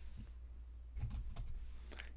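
Faint keystrokes on a computer keyboard: a few quick taps, most of them about a second in.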